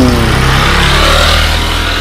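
A motor vehicle engine running and going past nearby, with a steady low rumble and a hiss that swells about a second in. The tail of a murmured 'hmm' is heard at the start.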